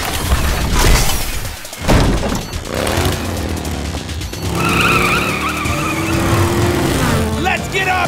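Cartoon motorcycle engines revving as the bikes start up and ride off, mixed with a music score. The engine noise is loudest in the first two seconds.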